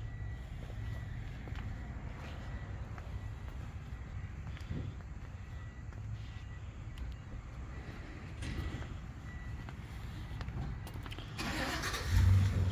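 Steady low rumble of outdoor background noise, with a few faint clicks and a louder burst of noise near the end.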